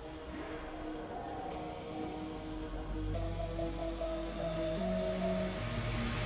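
Music: a quiet passage of held chord tones, with a low bass note coming in about halfway and the level slowly rising.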